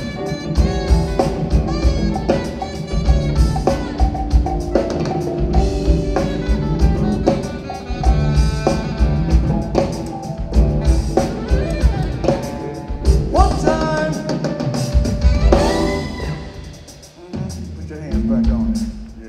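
Live jazz-funk band playing: electric bass, keyboards, saxophone and drum kit over a steady beat, with sliding melody notes near the end before the music dies down in the last couple of seconds.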